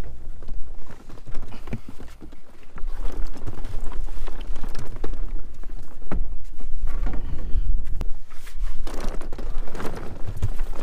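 Bell peppers being tipped from plastic picking baskets into a cardboard bulk bin, tumbling and knocking against each other in runs of dull thuds, over a steady low rumble.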